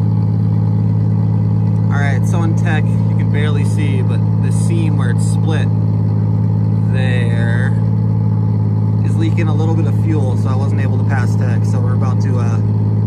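An engine running steadily at an even, low drone, with indistinct voices talking in the background.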